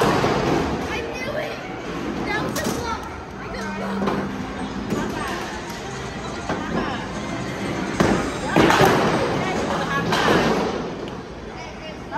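Bowling alley noise: a loud thud right at the start, then a cluster of crashes and thuds about 8 to 10 seconds in, from bowling balls and pins, over background chatter.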